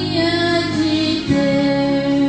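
A hymn sung with instrumental accompaniment, the voices holding long notes that change pitch about once a second.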